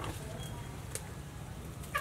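A short bird call, fowl-like, just before the end, over a steady low hum. A few light clicks and taps come from handling vegetables in a plastic basket.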